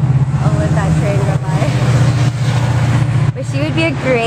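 A nearby engine running at idle, a steady low rumble with a fast even pulse, which falls away about three seconds in. Faint voices sound over it.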